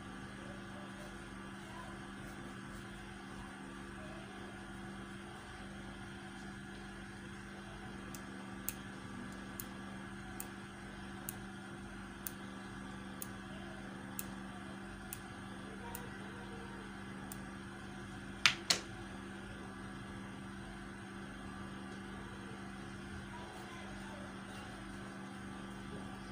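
A steady low hum throughout. Partway in comes a run of light clicks, about one a second for some ten seconds, then two sharper knocks in quick succession.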